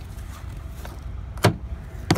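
A steady low rumble with a single sharp knock about one and a half seconds in.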